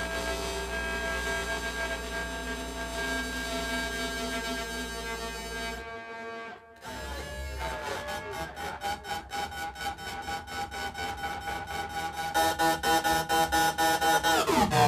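Live amplified experimental noise music. Layered drones and steady tones cut out briefly around the middle, then return as a steady high tone under a fast, even pulsing stutter that grows louder near the end.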